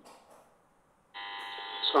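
A steady electronic buzz starts suddenly about a second in and holds for most of a second. It is heard over the video-call audio and stops as a man starts speaking.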